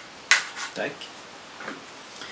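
A single sharp plastic click about a third of a second in as the battery is pulled out of a Hubsan Zino Mini Pro drone, with a faint tick of handling near the end.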